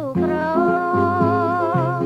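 A woman singing a Khmer oldies song, holding one long note with vibrato after a short downward slide at the start, over guitar and bass accompaniment.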